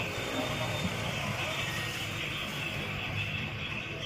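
A steady low mechanical hum in the background.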